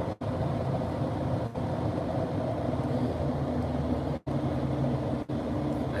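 Steady road and engine noise inside a car's cabin cruising at motorway speed, a low hum with tyre rumble. The sound cuts out for an instant a few times.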